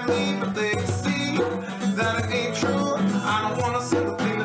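Live acoustic music: an acoustic guitar strummed in a steady rhythm while a hand shaker rattles along on the beat, with a man singing over it.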